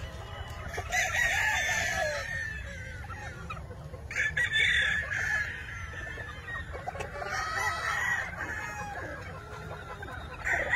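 Roosters crowing, three long crows about three seconds apart, with chickens clucking between them.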